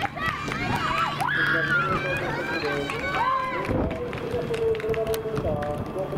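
Spectators at a track race shouting encouragement to the runners, "hashire, hashire" ("run, run"), several voices overlapping, with one voice holding a long call in the second half.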